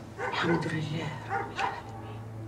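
An elderly woman's voice softly murmuring a prayer, in short breathy phrases.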